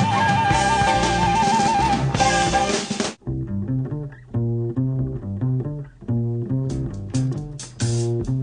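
Jazz recording with strings and drums: for about three seconds a full band plays, with a fast trilling high line over it. Then it cuts off abruptly into a passage of separate low double bass notes, and crisp cymbal strokes join in near the end.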